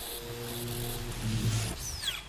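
Cartoon soundtrack: a held musical chord with a high shimmering layer on top, and a quick falling whistle-like glide near the end.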